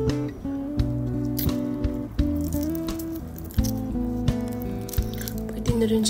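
Background music with held notes that change pitch, and sharp clicks now and then.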